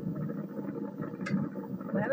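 Steady rumbling outdoor noise on the soundtrack of an old camcorder tape of a parasail ride, played back through a TV speaker, with a brief click a little past halfway.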